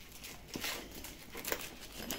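Faint rustling and a few light knocks of hands handling an e-bike controller box and its velcro strap under the rear rack.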